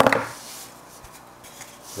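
Sprue cutters snipping a sprue gate off a plastic model-kit hull part: one sharp click just after the start, followed by faint rubbing of the plastic in the hands.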